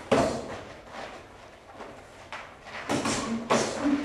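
Taekwondo combat drill: strikes, kicks, uniforms snapping and footwork on the mat, heard as short noisy bursts that echo in a large hall, one at the start and a quick cluster from about two to three and a half seconds in.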